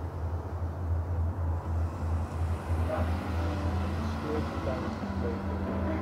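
A van engine idling with a steady, low, slightly pulsing hum. A second steady tone joins about halfway through.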